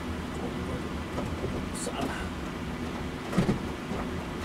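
Bedding rustling and bumping as a bed is being made in an overhead bunk, with two sharp knocks a little after three seconds in, over a steady low hum.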